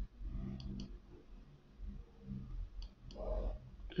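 Faint clicks in two quick pairs, one about half a second in and one near the end, over a low steady hum.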